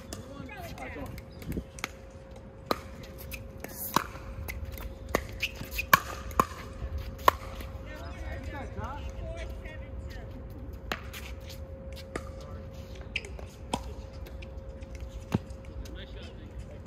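Pickleball rally: sharp pops of paddles hitting the hard plastic ball, about a dozen irregularly spaced hits, the loudest in the middle stretch, over a faint steady hum.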